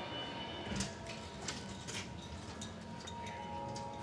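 Quiet corridor room tone with a faint steady hum and a series of light clicks and taps, several about half a second apart.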